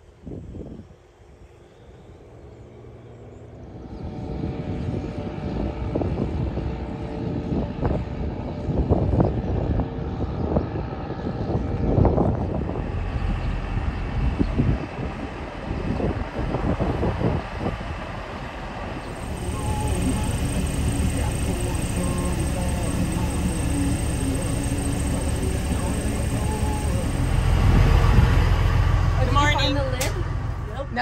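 Diesel semi trucks pulling grain trailers driving along a street, their engines coming up loud about four seconds in and running unevenly as they pass. A steadier engine hum follows in the second half.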